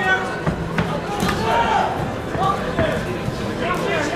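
Indistinct shouting from the boxer's corner and the crowd, with a few dull thuds from the boxing ring.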